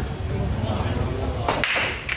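A pool break shot about one and a half seconds in: one sharp crack as the cue ball smashes into the racked balls, followed by the balls clattering as they scatter across the table.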